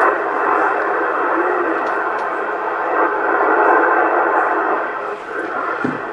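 Static hiss from a Yaesu transceiver receiving 27.625 MHz in upper sideband. It cuts in suddenly just before the start and runs as a steady, thin, mid-pitched rush.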